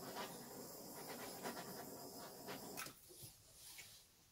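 Handheld butane torch flame hissing steadily as it is played over wet acrylic pour paint to bring up cells, shut off about three seconds in.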